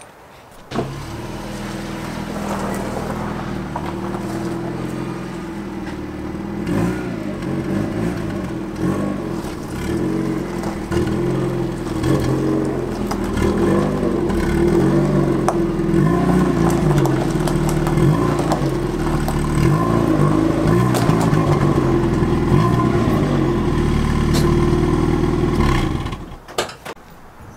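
Mazda Miata's four-cylinder engine running at low speed as the car is pulled in, getting louder about six seconds in and again a few seconds later.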